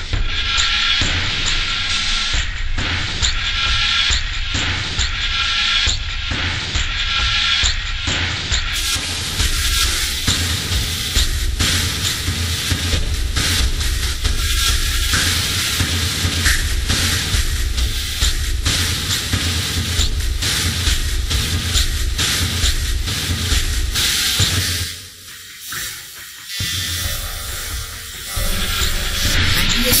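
Loud, dense, noisy music with heavy bass, dropping away briefly a few seconds before the end.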